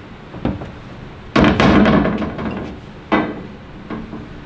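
Steel MOLLE panel and bolt hardware clattering on the tailgate: a small click, then a loud rattling clank about a second and a half in, and a single sharper knock near the end.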